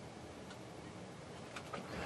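Quiet room tone after the accordion has stopped, with a faint click about halfway through and two small clicks near the end.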